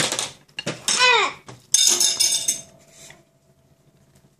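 A toddler's short squeal falling in pitch, then, about two seconds in, a spoon clattering onto the floor from a high chair with a brief ringing after it. There is a sharp knock right at the start.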